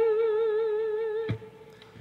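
One held note on an electric lap steel guitar with a slow, even vibrato from the steel bar, with a voice humming the same pitch. About two-thirds of the way in the note stops with a short click and it goes quiet.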